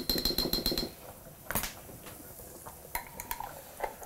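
Metal kitchen utensils clinking: a quick run of rapid light taps with a ringing tone in the first second, then a single sharp clink about a second and a half in, and a few faint knocks near the end.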